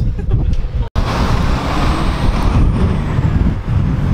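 Street traffic noise: a steady rush of passing road vehicles, with low rumble from wind on the microphone. The sound cuts out for an instant about a second in.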